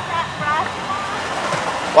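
Steady hiss of water spraying in an automatic car wash.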